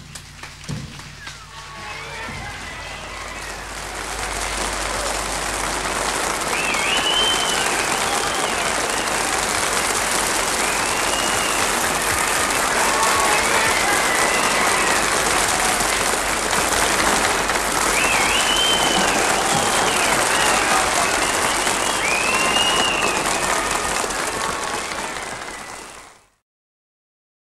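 Studio audience applauding, building over the first few seconds to steady, loud clapping with a few high calls rising and falling above it, then cut off abruptly at the end.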